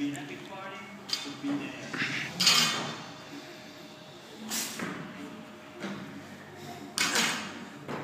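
Several short, sharp bursts (forceful breaths and clinks of the bar and bumper plates) as a lifter performs clean pulls with a 95 kg barbell, over a low steady background of gym voices.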